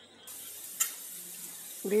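Chopped onions sizzling in hot oil in an aluminium kadai, a steady hiss that starts abruptly about a quarter second in. A steel ladle knocks once against the pan near the middle.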